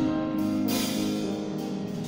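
Live band music from acoustic guitar and drum kit, held notes ringing on and slowly fading.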